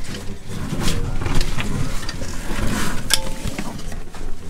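Close rustling and scraping of a PVC backpack and climbing gear rubbing against rock and the camera as a caver squeezes through a narrow passage, with a few sharp knocks.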